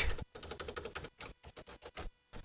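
Computer keyboard being typed: a quick run of key clicks, then a few scattered keystrokes.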